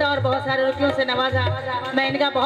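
Live ghazal: a woman singing a line with wavering, ornamented pitch, accompanied by harmonium and a steady low drum beat.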